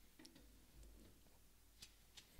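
Near silence, with a few faint light clicks of cards in plastic toploaders being handled, the clearest near the end.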